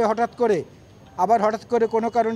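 Speech only: a man speaking Bengali, pausing for about half a second in the middle.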